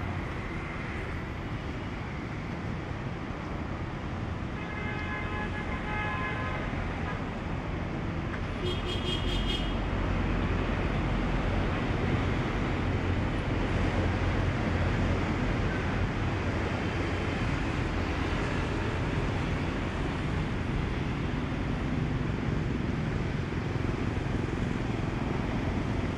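Road traffic going by, with a vehicle horn held for about two seconds and then a second, shorter honk a few seconds later. After the second honk, the traffic grows louder as a vehicle passes close.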